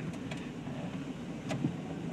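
Vehicle driving slowly through a muddy dirt track, heard from inside the cab: a steady low engine and tyre rumble, with a couple of sharp clicks, one about one and a half seconds in.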